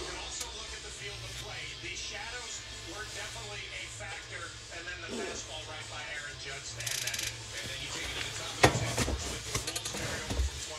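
A television sports broadcast playing in the room: music with a commentator's voice. A single sharp knock comes near the end.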